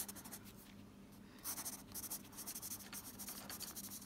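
Quiet scratching of a pencil on sketchbook paper as a signature is written: a quick run of short strokes, starting about a second and a half in.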